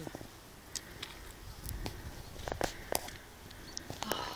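Quiet barefoot footsteps and rustling on a grassy mountain path: a few soft, irregular ticks over a low rumble.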